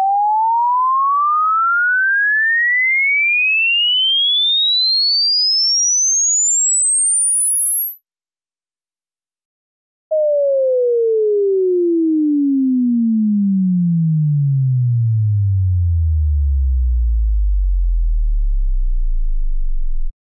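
Pure sine-wave test tone sweeping steadily upward from 632 Hz, the geometric centre of human hearing, rising in pitch to the top of the hearing range. After a short silence about ten seconds in, a second sweep falls from 632 Hz down to a deep bass tone.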